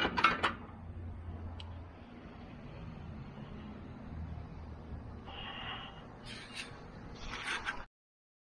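A few sharp metal clinks as the inversion drum's fittings are handled, then a low steady hum with a brief hiss, scattered knocks and handling rustle near the end, cut off suddenly just before the end.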